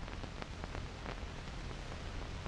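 Background noise of an old film soundtrack: a steady hiss over a low hum, with scattered faint crackles and clicks.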